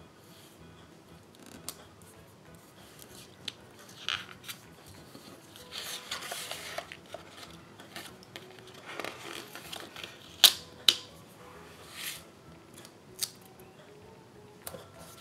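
Paper sticker sheets being handled and shifted on a tabletop: short stretches of paper rustling and sliding with scattered light ticks, and two sharp clicks close together a little past the middle that are the loudest sounds.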